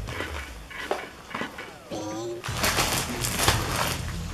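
Crunchy packaged snack mix being eaten from a plastic chip packet: scattered crunches and crackles, a short hummed 'mm' about two seconds in, then a louder crinkling rustle of the plastic packet over the last second and a half.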